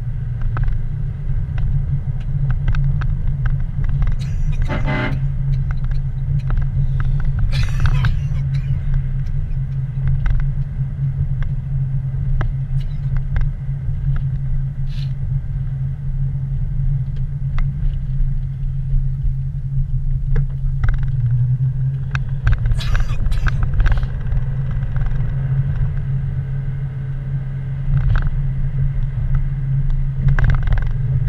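Car driving on wet road, heard from inside the cabin: a steady low rumble of engine and tyres, with a few brief sharp noises around 5, 8 and 23 seconds in.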